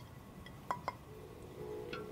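Two light clinks of a plate tapped against a glass bowl as spices are tipped in, followed about a second in by soft background music with held notes.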